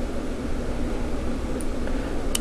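Steady background noise: an even hiss over a low hum, with no distinct event.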